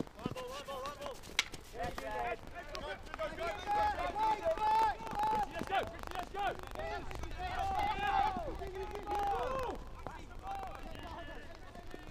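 Field hockey players shouting calls to each other across the pitch, several voices overlapping and loudest in the middle of the stretch. A few sharp clicks of a hockey stick striking the ball come in the first few seconds.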